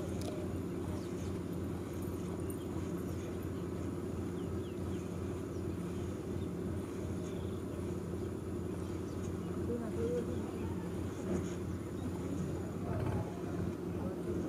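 A small engine running steadily nearby, a low drone with an even pulse, over the faint squirts of milk being hand-stripped from a goat's teat into a plastic bottle.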